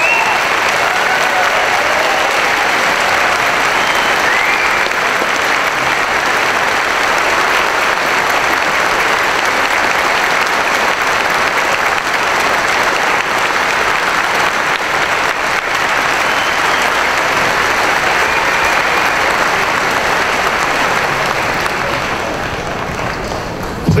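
A large audience applauding steadily, tapering off over the last few seconds.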